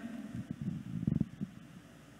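Microphone handling noise: low rumbling and rustling with a dull bump about a second in.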